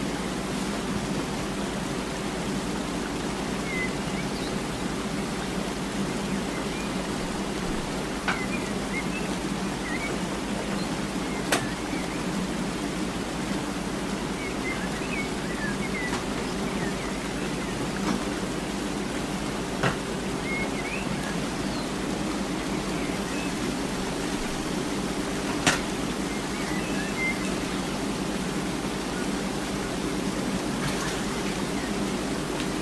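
Steady hiss with a low, even hum underneath, broken by a handful of short, sharp clicks.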